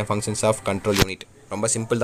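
A man talking, with one sharp click about halfway through and a short pause after it.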